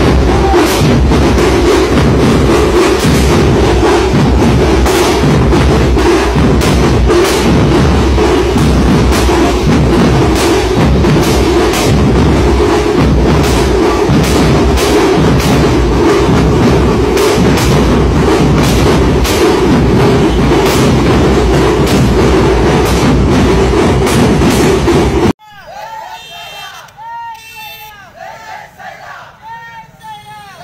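Loud celebration: fireworks and firecrackers crackling and banging over crowd noise and music with drums. About twenty-five seconds in it cuts off suddenly to a voice talking over quieter street noise.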